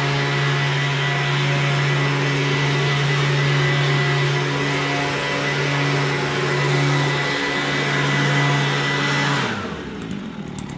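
Stihl BG86 two-stroke leaf blower running steadily at high speed, then switched off about nine seconds in, its engine winding down with a falling pitch.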